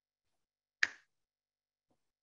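A single short, sharp click a little under a second in, with dead silence around it.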